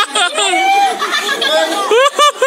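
Children's excited chatter, several high voices exclaiming over one another.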